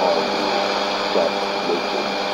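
Shortwave AM broadcast on 15120 kHz playing from a Sony ICF-2001D receiver: faint speech from the announcer, half buried under steady static hiss, with a low steady hum.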